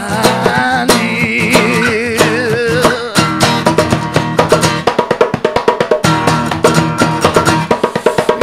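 Band music: plucked guitar and drums, with a wavering melody line for about the first three seconds, then a stretch of rapid, closely spaced drum hits.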